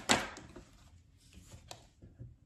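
Tarot cards being handled on the table: a sharp snap or tap just after the start, then a few fainter taps about a second in and near the end.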